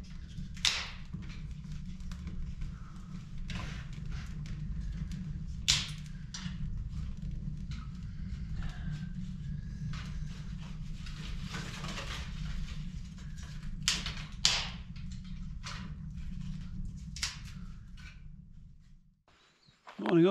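Wood fire crackling in a stone fireplace: a steady low rumble with about ten sharp snaps and pops scattered irregularly through it, the loudest about 6 and 14 seconds in.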